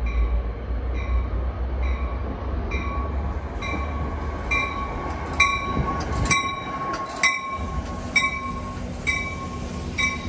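An NJ Transit passenger train pulling into the station and rolling past, with a low rumble and wheel noise, and a brief rush of noise as its front passes about six seconds in. A bell rings steadily about once a second throughout.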